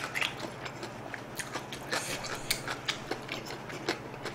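A mouthful of instant ramen noodles chewed close to a microphone: irregular wet clicks and smacks from the mouth.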